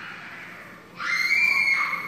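Dog whining: one high-pitched whine that starts about a second in and lasts about a second.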